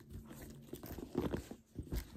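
Handling noise from a quilted leather handbag and its gold metal chain strap being lifted and moved: irregular rustling and scraping with a few soft knocks, strongest in the second half.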